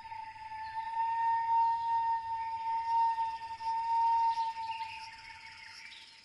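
Film-score drone: a single high note held steadily, wavering slightly, with bird chirps of jungle ambience over it. The sound thins out near the end.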